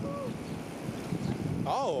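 Wind rushing over a moving camera's microphone, a rough low rumble, while riding along a city street. A voice calls out "oh" near the end.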